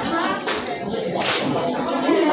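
Two short, hissy slurps of noodle soup, about half a second in and again just past one second, over restaurant chatter.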